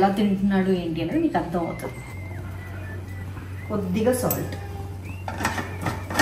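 A woman talking, then a background music bed with a steady low hum. A few short clicks and knocks of kitchen things being handled come near the end.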